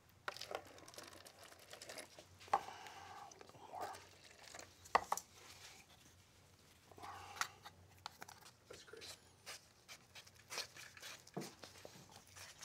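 Faint scattered clicks, scrapes and rustles of hands at work: a paper cup pulled from a stack, a plastic tub of dental alginate handled, and a wooden stick scooping the powder into the cup.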